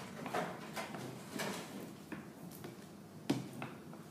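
Wooden rolling pin worked back and forth over a clay slab on a canvas-covered board, a series of irregular rolling strokes, with one sharper knock about three seconds in.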